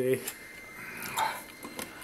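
Faint handling sounds of a hand-held can opener being worked on the tin rim of a coin bank, failing to bite into the metal.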